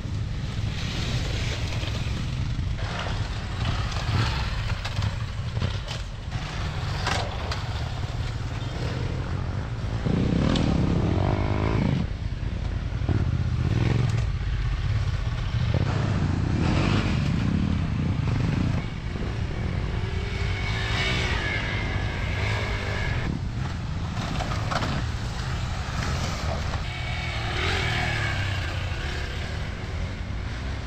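Dirt-trail motorcycles riding past, their engines rising and fading as they come through, loudest between about ten and eighteen seconds in.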